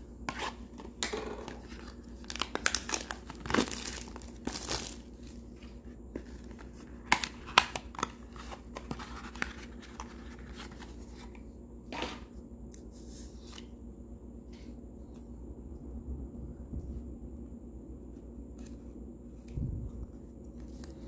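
A wrapped trading-card pack being torn open and its cardboard box opened by hand: scattered crackling, tearing and clicking through the first dozen seconds, then quieter handling.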